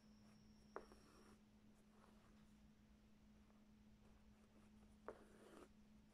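Near silence: faint scratches and ticks of an embroidery needle piercing cloth stretched in a hoop and the thread being drawn through, twice, about a second in and again near the end, over a faint steady hum.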